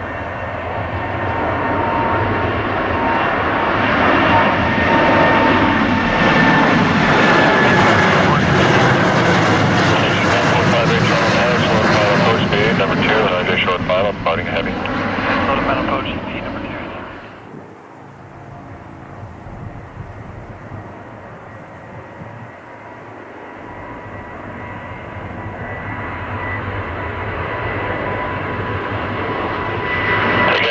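Boeing 787 Dreamliner turbofan engines at takeoff power as the jet lifts off and climbs away: a loud roar with a high whine that sags slightly in pitch as it passes, cutting off suddenly about 17 seconds in. After that, a second departing 787's engine noise comes in quieter and grows steadily louder toward the end.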